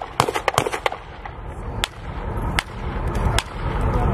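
Small-arms gunfire: a quick string of shots in the first second, then single shots spaced almost a second apart.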